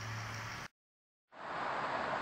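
Small electric wort pump humming steadily under a faint hiss as wort runs through a hose into the fermenter. A little past the middle the sound drops to dead silence for about half a second, then the hiss returns with the hum weaker.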